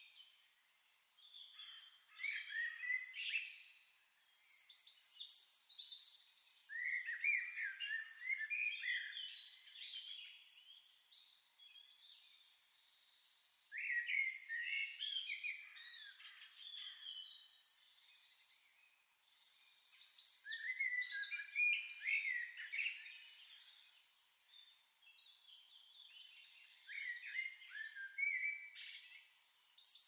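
Birdsong: several birds singing in bursts of chirps, up-and-down whistled notes and rapid trills, with quieter gaps of a few seconds between the bursts.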